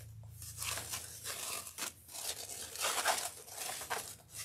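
Wired Christmas ribbon rustling and crinkling in irregular bursts as hands fold loops and press them into a bow, loudest about three seconds in.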